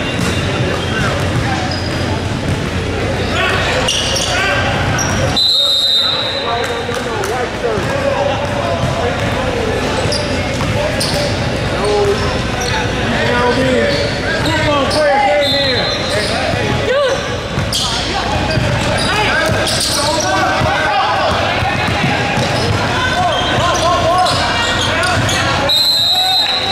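Basketball game in an echoing gym: the ball bouncing on the court under the chatter and shouts of players and spectators. A referee's whistle gives a short blast about five seconds in, another about fifteen seconds in, and a third at the end.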